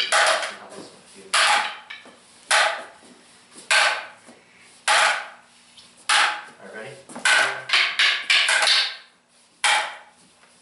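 Wooden double-stick training sticks clacking together as partners strike each other's sticks, sharp cracks with a short ring. The clacks come about one every second, then a quicker run of several close together near the end.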